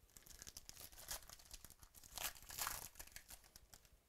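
A foil trading-card pack wrapper being torn open and crinkled: a faint, dense run of crackling that is loudest a little past the middle and stops just before the end.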